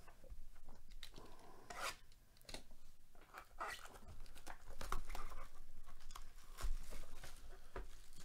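Clear plastic shrink wrap being torn off a sealed trading-card hobby box and crumpled in the hand: irregular crackling and tearing, loudest about five seconds in and again near seven.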